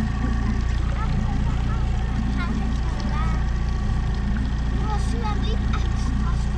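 Small boat's outboard motor running steadily, an even low drone, as the boat moves through calm water.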